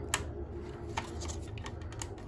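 A few small clicks and light handling noise from a gloved hand working the wires and terminals inside a boiler control box, over a faint steady hum.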